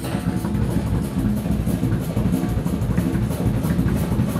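Live electric bass and drum kit playing together: an amplified bass line over a steady drum groove with cymbals.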